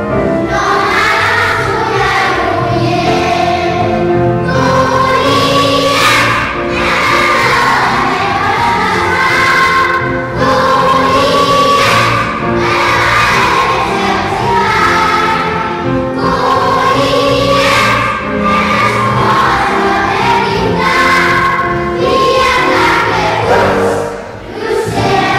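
Children's choir singing a song in unison phrases, steady and continuous.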